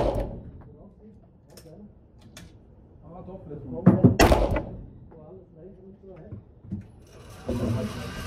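Beretta 92 FS 9mm pistol firing single shots, one at the very start and another about four seconds in, each sharp report ringing in the enclosed indoor range.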